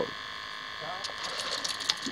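Steady buzzing hum throughout, under a quickening run of sharp clicks and crackle in the second second as a hooked fish is reeled to the side of the boat and lifted out of the water.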